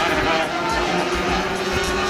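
Racing motorcycle engine running at a steady speed, with people's voices over it.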